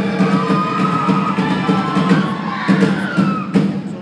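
Live Tongan group song: many voices holding long notes over accompaniment, with a few sharp hits in among them. The music fades away near the end.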